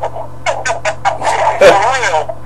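Men's voices in a phone-line conversation, the words unclear, with one louder drawn-out vocal sound a little before the end, over a steady low hum.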